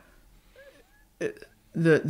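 A pause in speech that is close to quiet, broken a little over a second in by a short throat or breath sound from the speaker. Her voice comes back just before the end.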